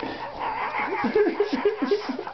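Pomeranian dog vocalizing in a quick string of short, whiny yips, about five a second, growing stronger about a second in.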